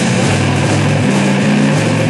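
Rock band playing live, an instrumental stretch: low held guitar and bass notes stepping from one pitch to the next every half second or so under a dense wash of drums and cymbals.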